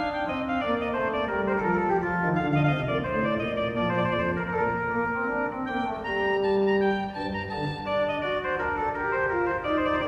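Bénigne Boillot's 1768 French pipe organ playing a two-voice Duo from a Baroque organ suite: a low line and an upper line moving against each other in quick notes.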